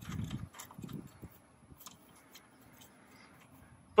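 Faint handling sounds of a steel stud being threaded in by hand: a few small metallic clicks and a couple of low dull thuds in about the first second, then little sound.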